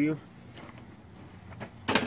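Quiet background after a spoken word, then one sharp click near the end.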